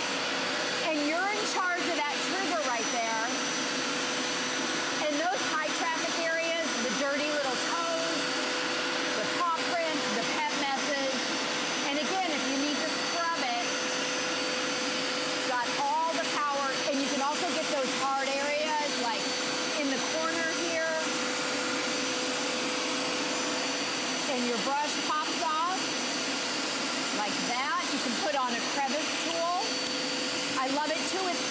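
Hoover Power Scrub Elite carpet cleaner running, its suction motor drawing through the hose and hand tool as it is worked over a carpeted stair. It makes a steady rushing noise with an even hum and a high whine, unchanging in level.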